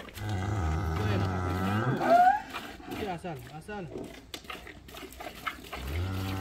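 Holstein cow mooing: one long low moo lasting nearly two seconds that rises in pitch at its end, then another low moo beginning near the end.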